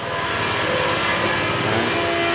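A steady mechanical hum: several held tones over an even drone, from a motor running without a break.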